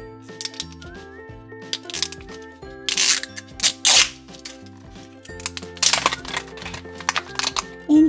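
Light background music with a repeating bass line, over the crinkling and tearing of a plastic-film wrapper layer being peeled off an LOL Surprise ball. The crackling is loudest about three to four seconds in and again around six seconds in.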